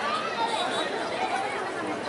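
Crowd chatter: many people talking at once, no single voice standing out, at a steady level.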